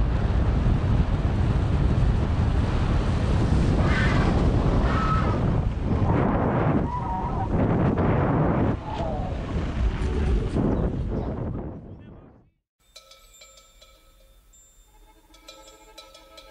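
Wind rushing over the microphone of a camera on a moving mountain bike. It is loud and gusty and cuts off suddenly about three-quarters of the way through, leaving quiet background music with sustained tones.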